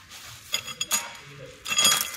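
Steel parts of a chain link fence machine knocking together: a few light metallic clinks, then a louder, ringing metal clank near the end.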